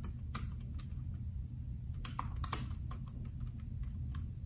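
Bluetooth computer keyboard being typed on: irregular key clicks in quick runs, with a cluster of keystrokes about halfway through, over a steady low hum.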